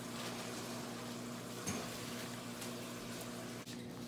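Quiet, steady room background: a low, even hum with a soft hiss, and one faint soft bump about one and a half seconds in.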